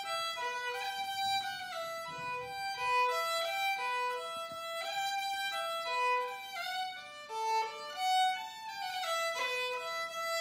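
Solo fiddle playing a Scottish pipe reel in B minor, a quick stream of bowed notes.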